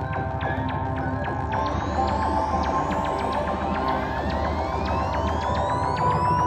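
Live electronic hip-hop instrumental played through the stage PA, with no vocals: a held synth drone and regular ticking percussion. A rising synth sweep climbs steadily from about a second and a half in.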